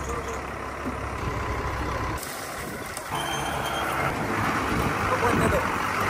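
Ashok Leyland dumper truck's diesel engine running as the truck is eased along, the sound changing character about two seconds in, with a short high beep about three seconds in.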